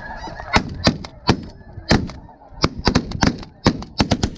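A volley of about ten shotgun shots from several hunters firing at a flock of geese, a few single shots in the first two seconds and then a quick run of them near the end. Snow goose calling runs underneath.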